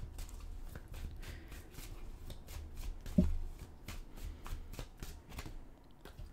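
A tarot deck being shuffled by hand: a run of soft, irregular card clicks and riffles. About halfway through there is a brief hum of voice.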